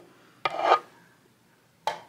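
Hard plastic electronics cases being handled against each other: a click with a short rub or scrape about half a second in, and another sharp click near the end.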